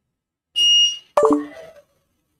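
A short, high electronic beep, then a sharp click and a quick run of tones stepping down in pitch.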